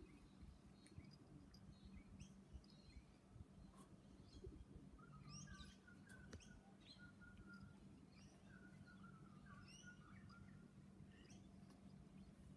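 Near silence: faint bird chirps and a short warbling song in the distance, over a low steady hum.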